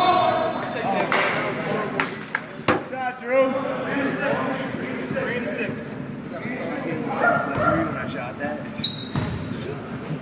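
Basketball bouncing on a hardwood gym floor amid overlapping voices and shouts, echoing in a large hall, with a sharp knock nearly three seconds in.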